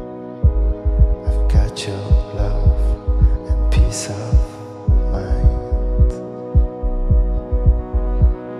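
Electro-pop music played live: a pulsing kick drum and synth bass under sustained synthesizer chords, with two brief swelling whooshes about two and four seconds in.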